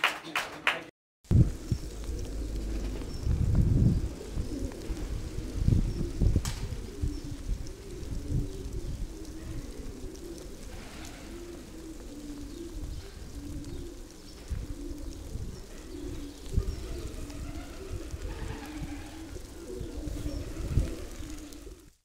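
Repeated low bird calls over a low rumble, after a brief dropout to silence about a second in; a single sharp click comes about six seconds in.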